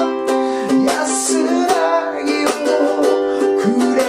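Ukulele strummed in a 16-beat pattern with muted chop accents, moving through simple chords, while a man sings along.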